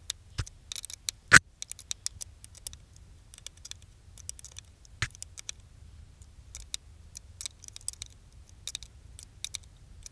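Metal spanner working the nuts on an awning roof bracket: quick, irregular metal clicks in small clusters, with a louder click about a second and a half in and another around five seconds, as the bracket bolts are tightened down.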